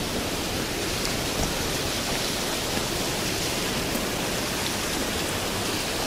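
River water rushing steadily, a constant even hiss with no break.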